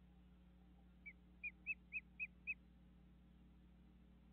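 A bird calling: a quick run of six short whistled notes, each rising then falling, about four a second, starting about a second in.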